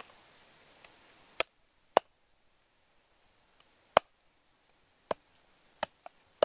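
A meat cleaver chopping raw chicken on a round wooden chopping block: five sharp chops at uneven intervals.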